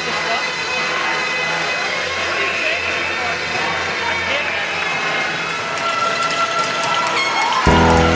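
Music over an arena's sound system mixed with indistinct crowd chatter. Near the end a louder track with a heavy bass cuts in suddenly.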